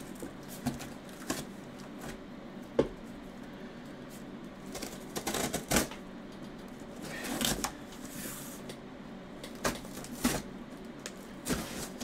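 Scissors cutting the packing tape on a cardboard box: scattered snips, scrapes and rustles of tape and cardboard, with a few longer swishes as the blades run along the seam.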